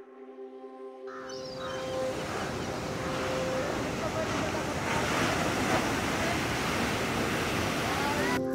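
Sea surf: waves breaking and washing onto a beach. The steady rushing noise sets in about a second in, over a soft held music drone that fades away within the first few seconds.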